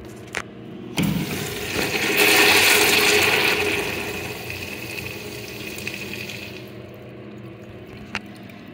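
American Standard Allbrook urinal flushing through its manual flush valve. A click comes first, then water rushes in suddenly about a second later. The rush is loudest over the next couple of seconds and then tapers off.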